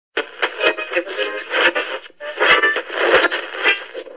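Tinny, narrow-band music and sound, like an old film soundtrack played through a television speaker, with several short sharp sounds among it.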